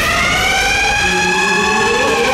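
A siren-like wail from the ride's sound system, rising and then falling in pitch once in a slow arch.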